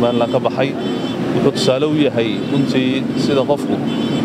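A man speaking in Somali, talking continuously.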